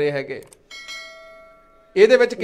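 A single bell-like chime struck about two-thirds of a second in, ringing and fading away over about a second. It is the notification ding of an on-screen subscribe-and-bell animation.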